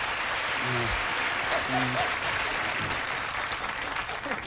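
Studio audience applauding, a steady wash of clapping that dies away right at the end.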